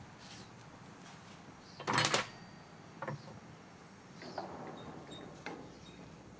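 Kitchen handling sounds at a pan of fruit: one short, loud scrape or clatter about two seconds in, then a few light clicks.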